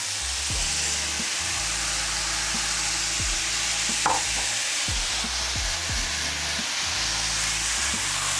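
Fresh chanterelle mushrooms frying in hot oil in a pan, a steady sizzle. There is a short knock about four seconds in.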